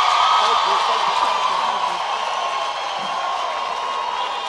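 A large crowd cheering and clapping, a dense wash of voices and applause that slowly dies down.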